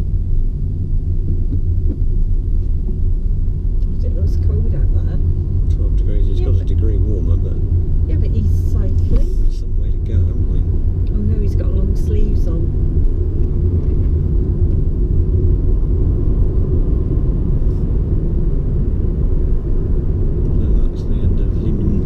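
Steady low rumble of a car driving along a road, its engine and tyre noise heard from inside the cabin.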